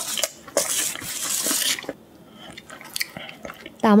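Crisp pizza crust and paper crackling as a slice is pulled up and handled, for about two seconds with a few sharp clicks. Then quieter small handling sounds.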